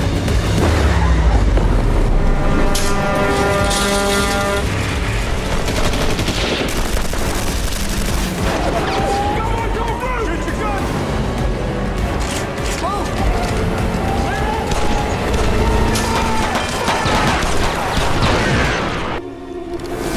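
Action-drama sound mix: bursts of gunfire and a boom over a dramatic music score, with raised voices.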